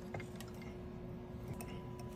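Quiet electronics repair bench: a faint steady hum with a few light clicks from tools being handled, a second, higher hum joining about a second and a half in.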